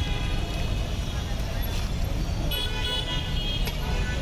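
Busy street ambience: a steady traffic rumble with voices and music in the background, and a brief high-pitched horn toot about two and a half seconds in.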